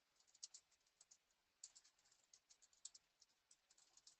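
Faint typing on a computer keyboard: irregular runs of quick, light key clicks.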